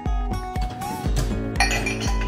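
Background music with a steady bass beat, over the clink of ceramic mugs and glasses knocking together as they are handled in a dishwasher rack.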